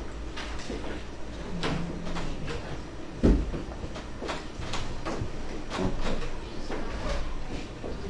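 Scattered knocks and clatter in a classroom as the lesson breaks up, with one loud thump a little over three seconds in.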